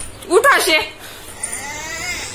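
A toddler's high-pitched wordless vocalising: a short, loud call with a bending pitch about half a second in, then a softer rising sound near the end.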